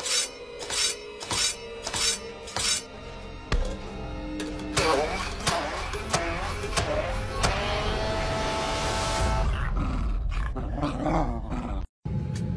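A kitchen knife chopping on a plastic cutting board, about six even strokes, then a handheld immersion blender running for about five seconds, over background music.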